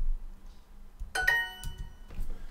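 A keyboard keystroke, then about a second in the Duolingo correct-answer chime: a short bright ding of several ringing tones that fades out, signalling that the typed answer was accepted.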